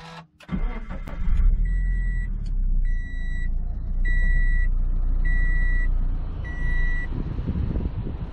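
Freshly rebuilt Subaru BRZ FA20 flat-four engine starting, heard from inside the cabin: it catches about half a second in, flares up and settles into a steady idle. Over it, a dashboard warning chime beeps five times, about once a second.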